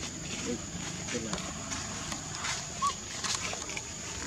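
Macaque vocalising in short calls: a few low gliding calls in the first second and a half, then a brief high squeak about three seconds in, the loudest sound, with a few faint clicks.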